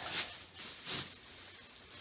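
Plastic bag wrapping rustling and crinkling as hands pull and bunch it around a guitar, with two short bursts, one at the start and one about a second in.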